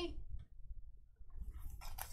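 A drawn-out voice trails off at the start, then faint rustling and light clicks of sealed card packs being handled, after a near-silent moment in the middle.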